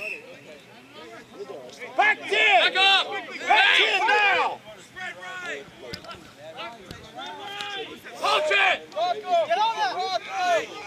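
Men shouting calls to each other across the field during open play, in several loud bursts about two, four and eight seconds in, with quieter voices between.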